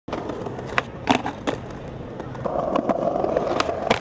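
Skateboard wheels rolling over stone paving, louder from about halfway as the board comes closer. Sharp clacks of the board: a few in the first second and a half, and two more near the end.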